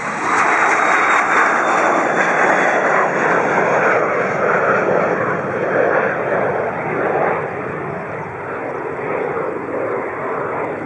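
Cessna Citation business jet's twin turbofans at takeoff power as it climbs out just after lift-off: a loud, steady rushing noise, loudest in the first half and slowly fading as the jet climbs away, with a faint high whine that drifts down in pitch over the first few seconds.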